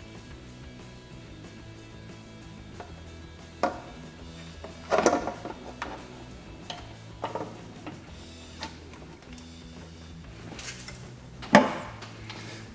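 Quiet background music, with a handful of separate knocks and clatters from a metal valve cover as it is lowered and worked into place on an engine's cylinder head. The loudest knock comes near the end.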